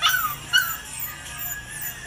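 Puppy yipping in short high-pitched cries, two loud ones in the first half second, then fainter ones.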